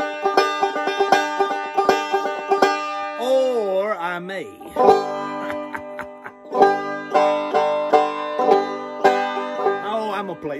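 Five-string banjo fingerpicked in a quick run of plucked notes. A few seconds in, the picking gives way to a short wavering, sliding tone, and then the picking resumes.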